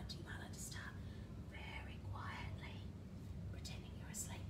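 A woman talking softly, close to a whisper, over a steady low hum.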